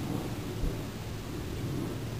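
Wind buffeting the camera microphone: a steady low rumble over a faint hiss, with one brief thump about half a second in.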